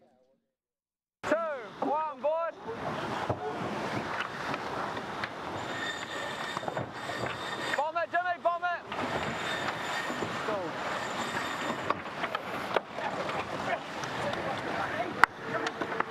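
Wind and water rushing past a GC32 foiling catamaran racing at speed, a steady noisy wash that starts after about a second of silence. Crew voices call out briefly near the start and again about halfway through.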